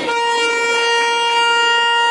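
Air horn sounding one long, steady blast at a single pitch, cut off abruptly.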